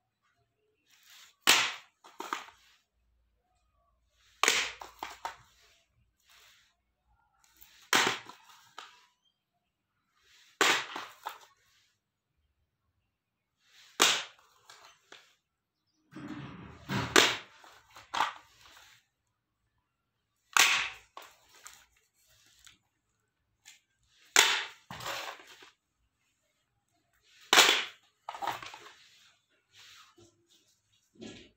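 Plastic audio cassette cases clacking as they are picked up and put down one after another: a sharp clack about every three seconds, each followed by a few smaller knocks.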